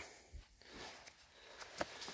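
Faint rustling handling noise with a couple of soft clicks.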